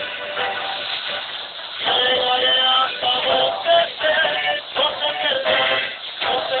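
A live Mexican trio: male voices singing to acoustic guitar accompaniment, getting louder about two seconds in.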